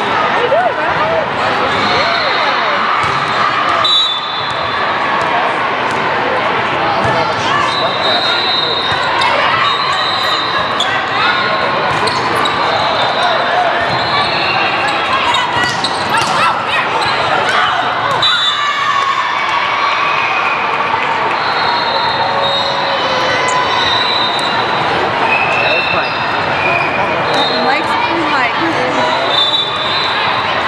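A volleyball being served, passed and hit during a rally, with sharp ball impacts amid players' and spectators' voices and short high squeaks, echoing in a large gym.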